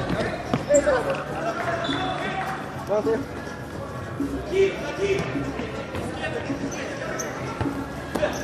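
Futsal being played on a hardwood gym floor: the ball being kicked and thudding on the wood, shoes squeaking, and players' calls ringing through the large hall.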